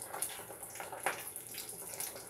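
Steady sizzling hiss from pans cooking on the stove, with a few soft crackles.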